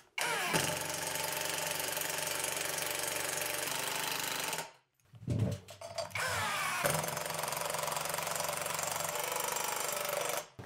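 Cordless impact wrench hammering as it drives screws into nylon wall plugs to fix a metal shelf rail to the wall. Two long runs, the second starting with a brief rising whine as the motor spins up, broken by a short gap about halfway.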